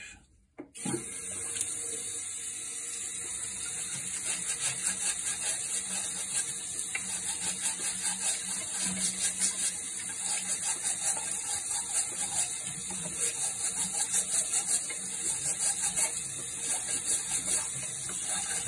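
Water running from a sink tap onto a chainsaw air filter that is being scrubbed under the stream. The tap comes on just under a second in, and from a few seconds in the scrubbing breaks the steady rush of water into a quick, uneven rhythm.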